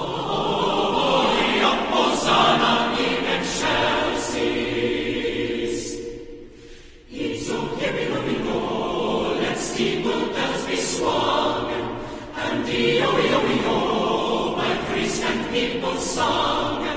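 Large mixed choir of men's and women's voices singing a Christmas carol. The voices drop away briefly about six seconds in, then come back in full.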